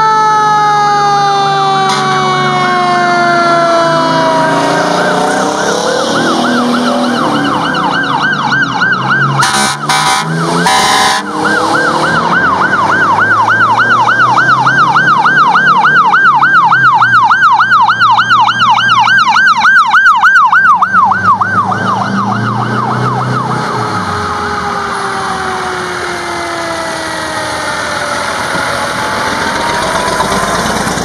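Fire truck sirens over the rumble of the engines: a siren falling in pitch as it winds down, then a fast up-and-down yelp for about ten seconds, broken by a few short loud blasts near the middle. Near the end another siren winds down again.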